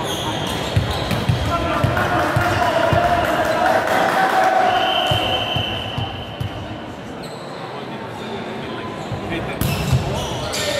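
A volleyball bounced repeatedly on a sports-hall floor, dull uneven thumps ringing in the hall, with players' voices. Near the end comes a single sharp smack of the ball being served.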